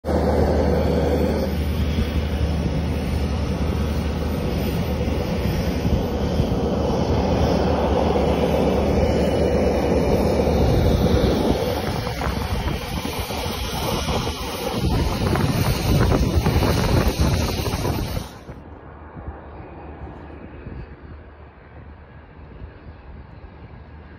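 An airplane taking off, a loud steady engine roar with wind on the microphone. About eighteen seconds in it drops off suddenly to a fainter rumble.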